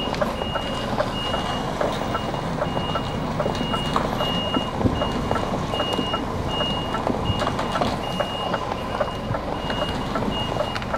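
Articulated lorry's reversing alarm beeping at an even pace, a single high tone a little more than once a second, over the lorry's diesel engine running as it reverses.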